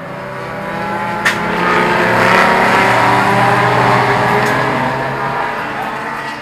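A race car's engine passing close by at a steady, unchanging pitch, growing louder to a peak mid-way and then fading. A single sharp click is heard about a second in.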